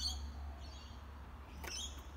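A few short, high bird chirps, near the start and again near the end, over a steady low background rumble.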